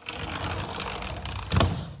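A sliding door being pulled along its track, a steady rolling rumble, ending in a thud as it shuts about one and a half seconds in.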